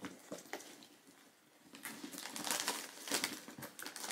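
Rustling and crinkling handling noise from a leather handbag being handled, with a few small clicks at first and a dense run of rustling from about two seconds in.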